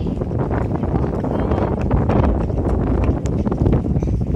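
Wind buffeting the microphone: a steady, heavy low rumble.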